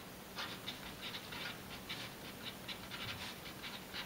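Felt-tip marker writing on a large sheet of paper: a run of short, faint scratching strokes, a few a second.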